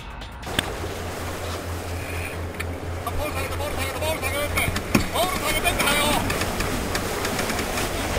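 Wind and water rushing past a racing sailboat under way, with crew voices calling out in the middle and a sharp knock about five seconds in.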